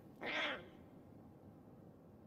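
Lion cub giving a single short mewing call, about half a second long, followed by quiet.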